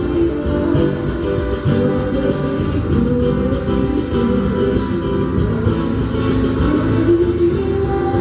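A small live band playing an instrumental passage with no singing: five-string electric bass, keyboard and guitar, with percussion.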